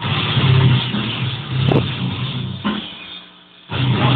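Loud, dense heavy metal music with a low, growling distorted sound, typical of deathcore guitars and drums. It dies away about three seconds in and comes back in full just before the end.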